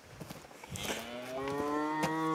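A long moo-like call with a slowly rising pitch, starting about a second in and held.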